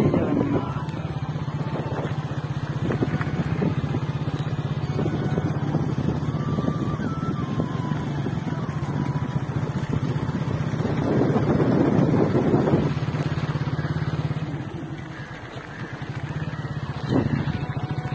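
Motorcycle engine running steadily as the bike rides along a dirt track, with its rapid firing pulses throughout; it eases off and goes quieter briefly near the end.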